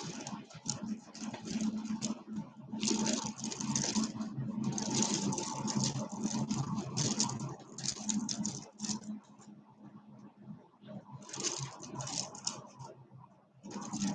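Many strands of turquoise stone beads clicking and rattling against one another as they are handled and shaken. A long spell of rattling dies away about nine seconds in, and a shorter one follows a little later.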